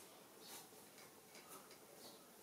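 Near silence with faint soft swishes about a second apart: a bare foot sliding over oiled skin during a back massage.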